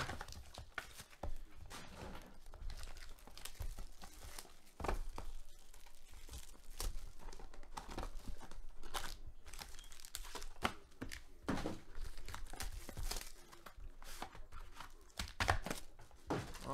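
Foil trading card pack wrappers and box packaging being handled, crinkled and torn open: a run of irregular crackles and short rips.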